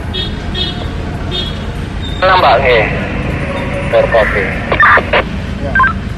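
A voice coming through a handheld two-way radio, thin and narrow in tone, from about two seconds in to about five seconds, over a steady rumble of street traffic and engines.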